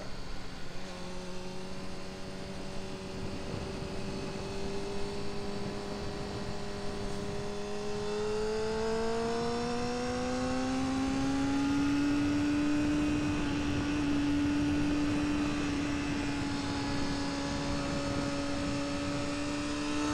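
Honda CBR600F4i's inline-four engine running on track, holding a steady note and then rising in pitch as it accelerates, beginning about eight seconds in, before holding the higher note. Wind rushes over the bike-mounted camera throughout.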